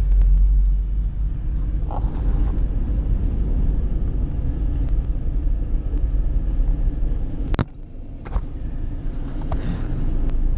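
Four-wheel-drive's engine running at low speed, a steady low rumble heard from inside the cabin as it rolls slowly along. A single sharp click about seven and a half seconds in.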